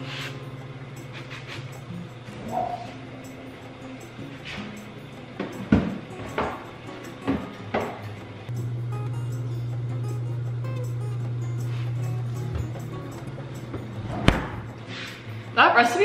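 A plastic-wrapped metal baking tray of cookie dough being put away in a refrigerator: a few knocks and clatters over a steady low hum. The hum grows louder for a few seconds in the middle, and there is a heavy thud near the end.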